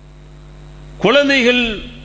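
Steady low electrical mains hum from the microphone setup, with a man's voice speaking a short phrase about a second in.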